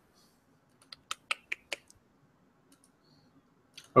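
A quick run of about six clicks at a computer, keyboard keys or mouse buttons, starting about a second in and lasting under a second.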